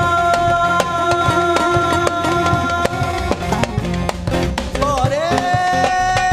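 Live band music: a male voice sings over keyboard and a steady drum beat, with a wavering run about two-thirds in that rises into a long held note near the end.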